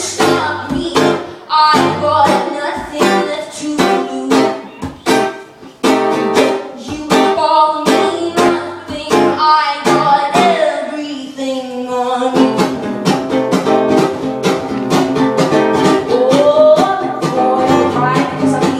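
A woman singing while strumming an acoustic guitar in a live performance, with steady, even strums under the melody. About two-thirds of the way through, a held sung note slides down before the strumming comes back fuller.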